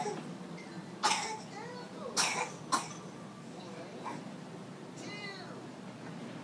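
Three short, harsh coughs, the first about a second in and two more close together just after two seconds, among a baby's high babbling sounds.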